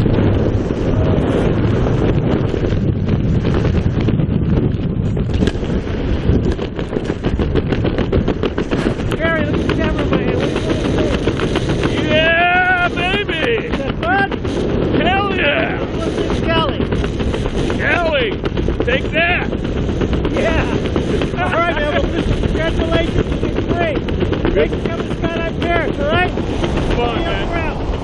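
Wind buffeting the action camera's microphone during a tandem parachute descent under an open canopy, a heavy, steady rumble. Short voice calls rise and fall over it in the middle stretch.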